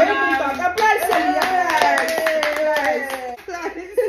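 Hands clapping quickly, about five or six claps a second, under a woman's long held voice that slides slowly down in pitch; both die away about three and a half seconds in.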